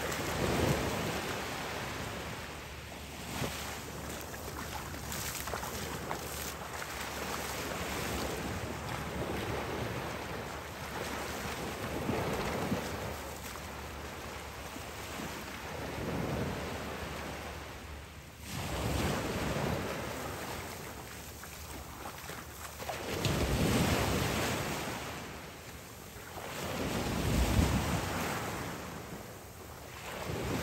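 Sea surf washing onto a beach, the noise swelling and fading every few seconds as waves break, with wind buffeting the microphone.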